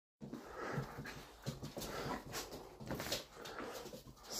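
Australian Shepherd panting in uneven breathy bursts close to the microphone.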